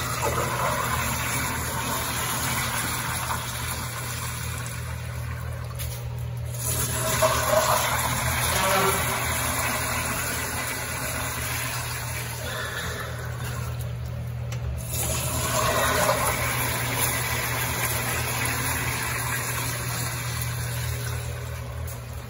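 Rheem Richmond toilet flushing from a push-button flush valve: water rushing and swirling in the bowl, running on steadily for the whole stretch, with a steady low hum underneath.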